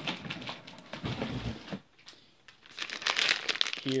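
Packaging rustling and crinkling as groceries are handled in a cardboard box. There is a spell of rustling, a short lull about two seconds in, then louder crinkling of a cellophane-wrapped spaghetti package near the end.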